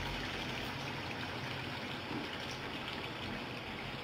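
Chicken curry sizzling and bubbling steadily in oil and tomato gravy in a kadai over the flame.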